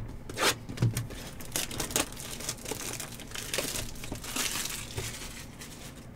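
Plastic wrap crinkling and tearing as a sealed trading-card hobby box is unwrapped and opened, in a dense run of irregular crackles.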